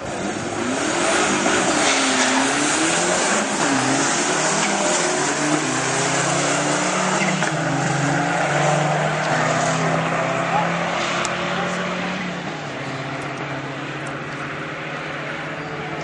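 Two turbocharged Dodge cars launching off the drag-strip start line and accelerating hard down the quarter mile. The engine pitch climbs and drops at each gear change, then the sound fades as the cars get further away over the last few seconds.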